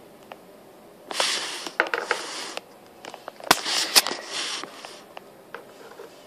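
Two bursts of hissy rustling noise with a few sharp clicks, one about a second in and one about three and a half seconds in, over quiet room noise.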